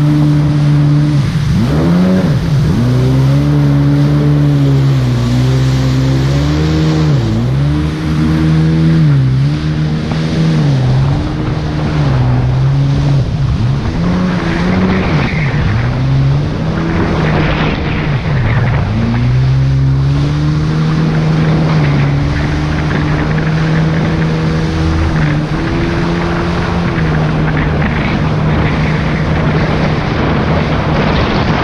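Jet ski engine running hard at speed, its pitch repeatedly dipping and climbing back every second or few as the throttle and load change over the chop, over a steady rush of water spray.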